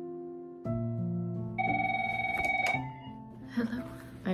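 Soft piano music, then about one and a half seconds in a room telephone rings once with a fluttering electronic ring lasting about a second. A voice starts near the end.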